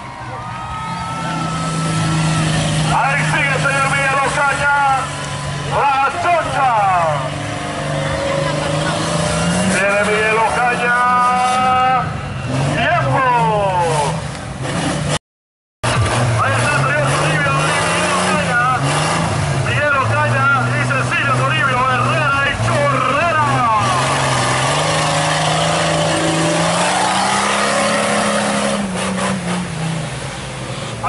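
Off-road 4x4 truck engine revving hard and labouring, its pitch rising and falling, as the truck churns through deep mud, with crowd voices around it. The sound cuts out completely for about half a second midway.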